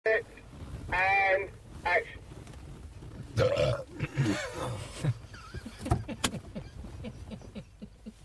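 Men's voices making short, loud non-word vocal sounds and laughing, with two sharp knocks about six seconds in.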